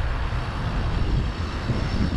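Steady low rumble of wind buffeting the camera microphone, mixed with tyre noise from a bicycle rolling over the paved street.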